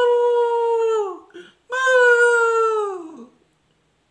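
A man's voice imitating a dog's howl: two long, high howls, each held steady and then falling off, the first ending about a second in and the second ending past the three-second mark.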